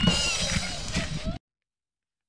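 Outdoor ambience on an action camera's microphone with a faint, short, wavering high-pitched call, cutting off abruptly to dead silence about a second and a half in.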